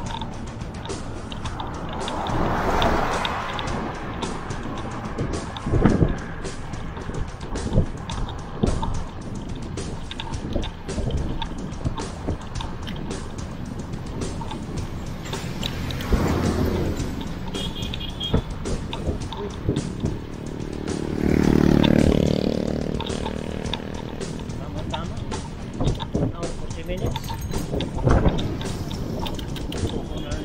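Wind buffeting the microphone of a bicycle-mounted camera, over the tyre and road noise of a bicycle riding on a paved road, with many short thumps. Motor vehicles pass several times, the loudest a passing engine with a low hum about two-thirds of the way through.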